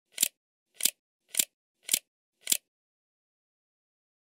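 Title-card sound effect: five short, sharp clicks about half a second apart, stopping about two and a half seconds in.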